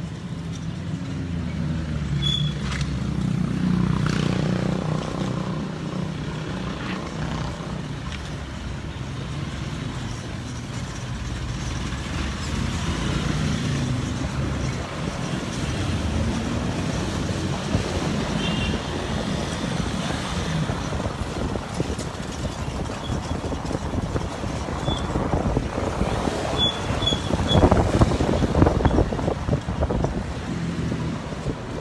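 Motorcycle engine running under way, its pitch rising and falling with the throttle, with a louder rush of noise near the end.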